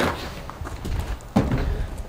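A single hard thud about one and a half seconds in, a wooden balance board knocking down onto the floor as a person steps onto it, with a light knock just before.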